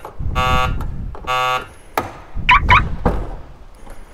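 A car's electronic warning buzzer sounding three evenly spaced beeps, each under half a second and about a second apart, as the driver's door of a Nissan GT-R is opened; a sharp click follows about two seconds in.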